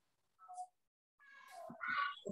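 A brief faint high-pitched vocal sound about half a second in, then a longer high-pitched call that grows louder near the end.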